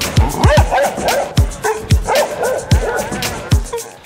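A dog yipping and whining in short, rising and falling calls over music with a steady beat and a deep kick drum.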